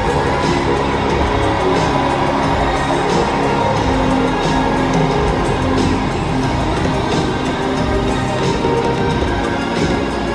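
Upbeat end-card music playing steadily with a regular beat.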